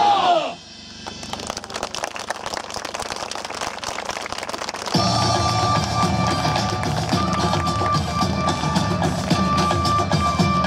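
Recorded backing music for a samurai sword performance, played over outdoor loudspeakers. The guitar-led part falls away about half a second in, leaving a quieter stretch of sharp rhythmic ticks, and the full music with drums comes back in at about five seconds.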